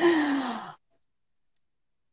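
A woman's drawn-out sighing vocalisation with a falling pitch, lasting about three-quarters of a second.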